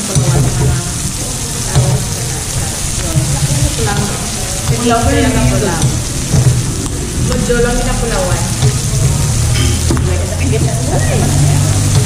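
Pork belly slices sizzling steadily on a tabletop Korean barbecue grill pan.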